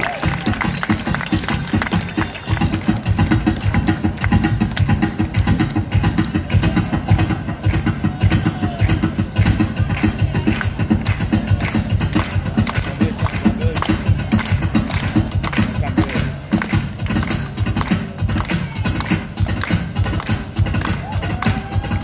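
Live Mexican folk music: strummed small guitars and a guitar playing, with a dancer's fast zapateado footwork drumming on a wooden platform as a rapid stream of taps.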